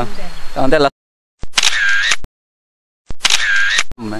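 A man's voice, cut off short, then a camera shutter sound effect played twice, each a click, a short pitched whirr and a closing click lasting just under a second, with dead silence around them.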